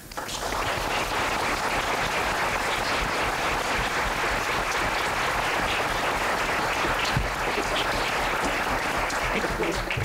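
Audience applauding, setting in right away and running steadily, with a few voices coming in near the end as it thins.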